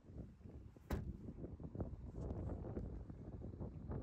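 A single sharp thump about a second in, the BMW 3 Series boot lid being shut, followed by wind buffeting the microphone with a low rumble.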